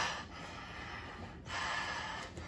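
A person breathing hard from the effort of grappling, with a longer, louder noisy breath starting about one and a half seconds in.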